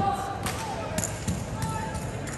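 Several sharp knocks as drill rifles are handled and their butts set down on a concrete floor, under a drawn-out called drill command.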